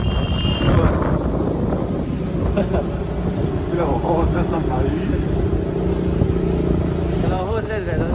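A vehicle engine running steadily while moving along a street, with brief indistinct voices partway through and again near the end.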